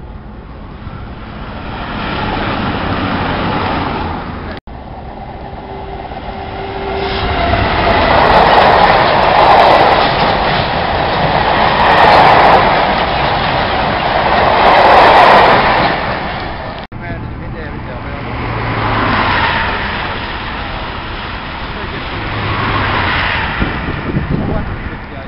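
Freight train of empty box wagons rolling past close by, the rumble and rattle of wheels and wagon bodies swelling and fading in three waves. Before and after it, the quieter rumble of trains approaching on the main line.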